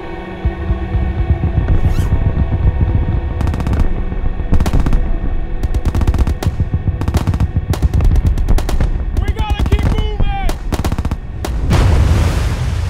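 Gunshots from pistol fire on an outdoor firing line, coming in quick clusters of several shots a second, over background music with held tones at the start. A longer rushing blast comes near the end.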